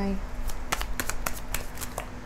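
A deck of tarot cards being shuffled by hand: a quick, irregular run of light card clicks as small packets are dropped from one hand onto the deck in the other.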